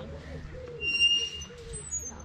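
Birds calling: low, wavering cooing notes, then a high, steady whistled note about a second in and a short high note falling in pitch near the end.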